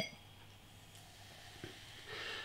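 The fading ring of a glass bottle neck clinking against a pint glass rim. It is followed by faint, quiet sound as beer starts to pour from the bottle into the glass.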